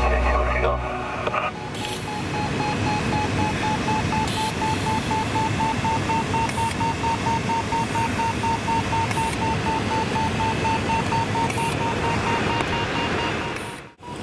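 Glider variometer beeping rapidly and evenly, the audio tone a glider's vario gives while climbing, over steady airflow rush in the cockpit. Background music fades out about a second in.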